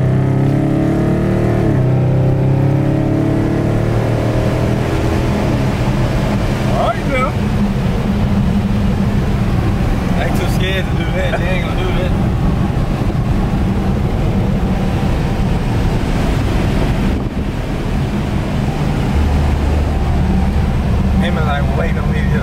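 Dodge Charger's engine and road noise heard from inside the cabin, the engine pitch rising as the car accelerates over the first few seconds, then settling to a steady cruise.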